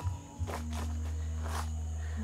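Footsteps, about four steps at an easy walking pace, over a steady low hum.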